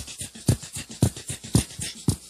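Drum beat in a band's live studio performance: a kick drum about twice a second under fast, steady hi-hat ticks, about four to each kick.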